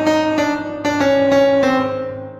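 Piano playing a rehearsal practice track, sustained chords and a melody line with fresh notes struck every half second to a second.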